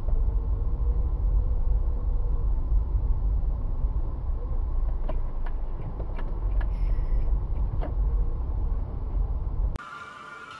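Steady low rumble of a moving car's road and engine noise, picked up by a dashcam inside the car, with a few faint clicks in the second half. It cuts off suddenly just before the end.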